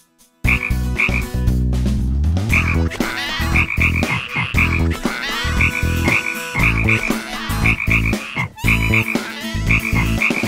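Cartoon giant frog croaking repeatedly, loud and deep, starting about half a second in after a brief silence.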